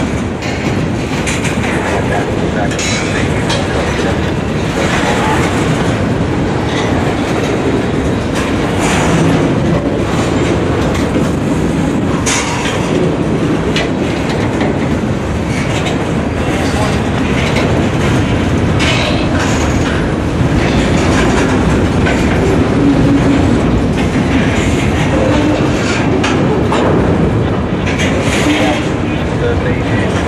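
Freight cars of a mixed manifest train rolling past close by: a steady rumble of steel wheels on rail with clickety-clack from the wheel sets. A few sharp clicks stand out at irregular moments.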